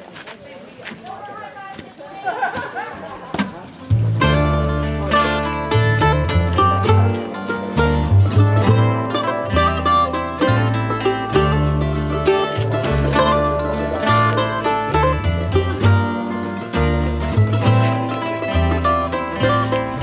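Bluegrass band playing an instrumental intro on mandolin, upright bass and acoustic guitar. The full band comes in loudly about four seconds in, after a few quieter seconds, and carries on with a walking bass line under plucked strings.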